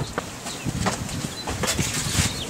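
Footsteps on concrete with irregular soft thuds, knocks and rumbling scuffs as an 18-inch BMW wheel with a low-profile tyre is handled and rolled along the ground.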